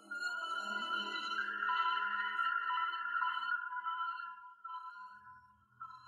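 Sustained keyboard synthesizer notes, held tones that step between pitches, thinly left over in an isolated vocal track. They fade about four and a half seconds in before a new note comes in.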